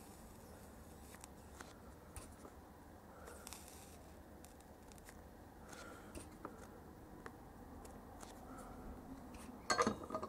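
Faint, scattered small clicks and scrapes from a soldering iron tip being dragged along the flux-covered pins of a QFN chip, reflowing the solder to clear bridges between the pins.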